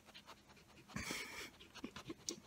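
A Great Pyrenees breathing faintly right at the microphone, with one louder, half-second breath about a second in.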